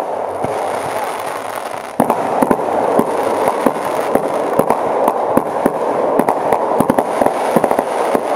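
Aerial fireworks bursting: a steady dense crackle punctuated by many sharp bangs, growing louder about two seconds in.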